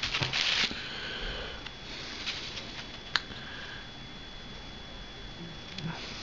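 A short rustle of noise at the start, then quiet handling of small hobby tools and a piece of plywood on a wooden workbench, with one sharp click about three seconds in.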